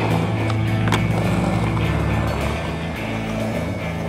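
Skateboard on smooth stone paving: two sharp clacks about half a second apart near the first second, the pop and landing of a flatground trick, then wheels rolling. A music track plays underneath.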